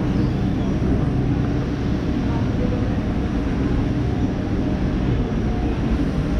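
Steady low rumble of outdoor city noise, with a few faint steady hums running through it.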